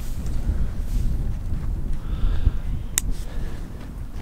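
Wind buffeting the microphone: a loud, unsteady low rumble, with one sharp click about three seconds in.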